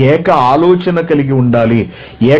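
A man speaking Telugu in a lecture, talking steadily and pausing briefly near the end.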